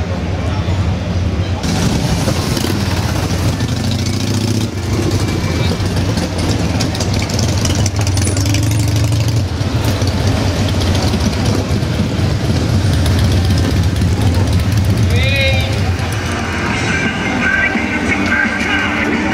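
Motorcycle engines running close by, a steady low rumble, as a cruiser motorcycle rides slowly past.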